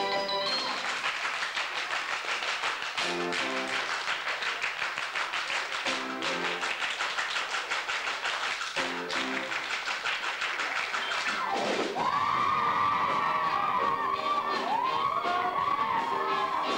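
Live band music for a stage dance number, with dense rhythmic clapping and low chords that come back about every three seconds. From about twelve seconds in, cheering and whooping rise over it and the sound gets louder.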